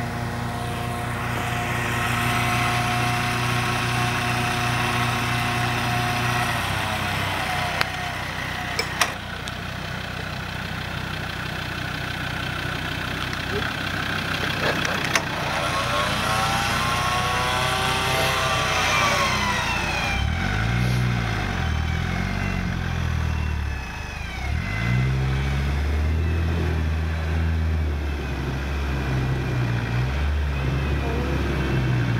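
Land Rover Defender engine idling steadily, then revved up and down again and again in the second half as the truck is pulled through deep mud on a line to a ground anchor. A few sharp clicks come about eight and nine seconds in.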